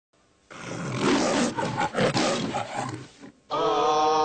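The MGM lion logo's roar: a big cat's roar in several rough pulses, starting about half a second in and dying away after about three seconds. A held musical chord comes in near the end.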